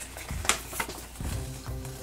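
Soft background music with a steady low beat, under the crinkle of a folded paper checklist leaflet being opened out and handled, with one sharp crackle about half a second in.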